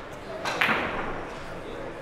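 Cue striking a carom billiard ball on a three-cushion table: one sharp clack about half a second in that rings off briefly.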